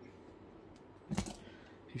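A single short click, about a second in, from filter parts being handled on the bench, with quiet room tone either side.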